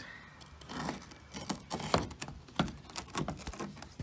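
A steel rod prodding and scraping along the rusted roof-skin seam of a Chrysler VG Valiant, making a run of irregular clicks, scrapes and creaks as the roof skin flexes. The roof skin has rusted through and come apart from the body along the back. The loudest knock comes about two seconds in.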